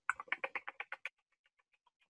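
An animal's chirping call: a rapid run of about sixteen short chirps, about eight a second, louder for the first second and then fading away.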